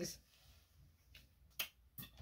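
A quiet room with a faint click a little after one second in and a sharper single click about one and a half seconds in.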